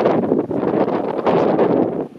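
Wind buffeting the camera's microphone: a loud, uneven, fluttering noise.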